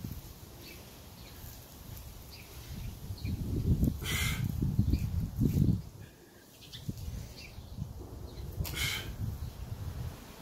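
A man's short, sharp breaths during push-ups with rotation, about one every four and a half seconds, in time with the reps. A low rumble, like wind buffeting the microphone, builds through the middle and drops away suddenly about six seconds in.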